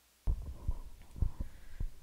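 Handling noise on a lectern microphone: a run of about six low thumps and knocks, starting a quarter second in, as something is moved against the lectern and microphone.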